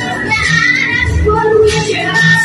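A girl singing into a handheld microphone over backing music, holding one note steadily near the end.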